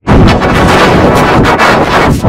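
Heavily overdriven, clipped audio from an effects edit: a dense wall of harsh crackling noise that cuts in suddenly at full blast and stays there.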